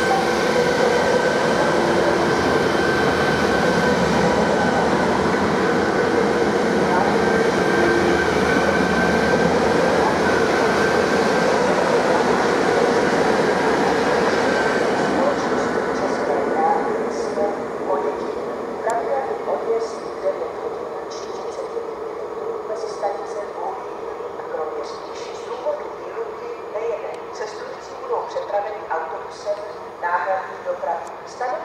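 Czech Railways class 660 InterPanter electric multiple unit running past and away, loud steady rumble of wheels on rail with a steady electric traction whine, fading after about fifteen seconds.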